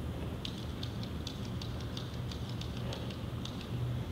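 Steady low room hum with irregular light clicks and ticks, about three or four a second.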